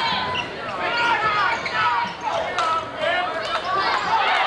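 Basketball game on a hardwood gym floor: sneakers squeak in short rising and falling chirps, a ball bounces a few times, and voices carry in the echoing gym.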